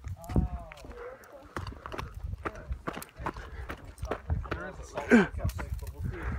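Footsteps on a gravelly dirt trail, a run of short sharp steps, with people's voices around them. About five seconds in, a short call whose pitch falls is the loudest sound.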